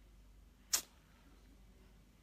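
A single short, sharp hiss close to the phone's microphone about three-quarters of a second in. The rest is low room tone.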